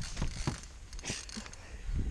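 Spinning rod and reel handled while fighting a hooked fish: a few scattered clicks and knocks over a steady low rumble.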